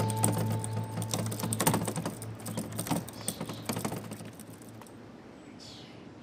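A rapid run of dry clicks, like fast ticking, that thins out and fades away over about five seconds, with a low held note under the first second. A brief hiss comes near the end.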